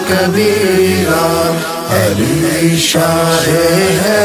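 Qawwali singing: a voice holding long, melismatic notes that glide up and down in pitch, over a steady low accompaniment.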